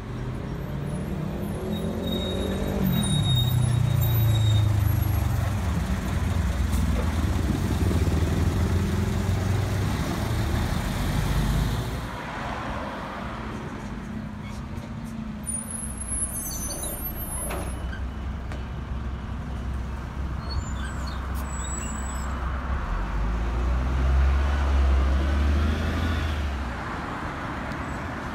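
Roadside city traffic at a bus stop. A large vehicle's engine runs close by, its pitch rising and then settling, until the sound changes abruptly about twelve seconds in. Lighter passing traffic follows, and another heavy vehicle passes loudly near the end.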